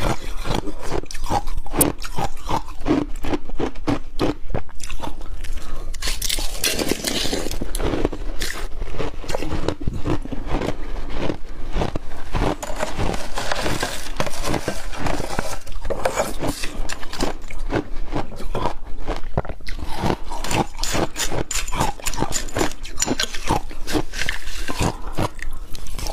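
Crunching and chewing of crushed ice slush with pomegranate seeds, with a metal spoon scraping through the ice in a glass bowl. A dense, continuous run of crisp crunches.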